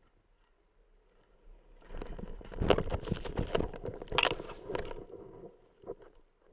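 Skis and body ploughing through deep powder snow, ending in a tumble into it: a run of rough crunching and swishing from about two seconds in, loudest in the middle, dying away shortly before the end.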